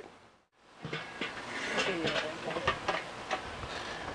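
Metal lid of a Weber charcoal kettle grill being lifted open, with a few light knocks and clatters over steady outdoor background noise.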